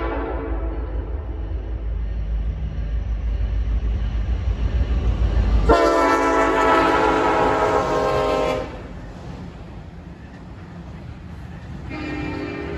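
Approaching freight train: a deep, steady rumble, with the tail of a horn blast fading at the start. About halfway through, the horn sounds again in one loud blast of about three seconds that cuts off sharply. A quieter rumble follows, and the horn starts again near the end.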